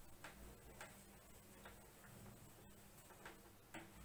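Near silence: room tone with a few faint, irregularly spaced ticks.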